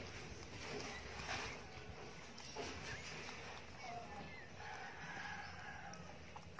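Newborn Shih Tzu puppy giving a few faint, short squeaks near the middle, over soft irregular clicking and rustling.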